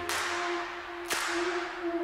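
Electronic background music in a quieter stretch: the bass drops out, leaving a held note with a sharp hit about once a second.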